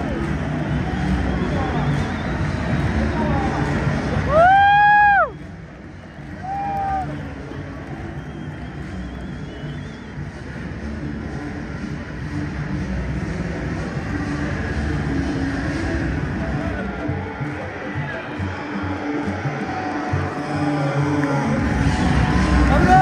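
Spectators chattering in a football stadium, with a loud drawn-out shout from a nearby fan about four seconds in and a shorter one about two seconds later.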